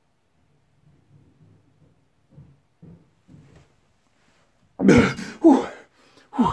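A man breaks a held breath with two loud, coughing exhalations about five seconds in, the second falling in pitch. Before them there are only a few faint, low sounds.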